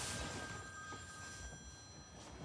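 A telephone ringing: one ring of steady tones that fades away shortly before the end.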